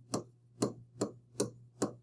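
A stylus tapping and clicking on a tablet's writing surface as a word is handwritten letter by letter, about two or three short taps a second over a faint steady hum.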